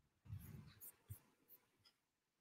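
Near silence, with a few faint soft knocks and small clicks scattered through it.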